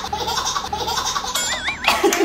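Two people laughing hard together, a high-pitched woman's laugh loudest, in rapid repeated bursts. A short warbling tone rises and falls near the end.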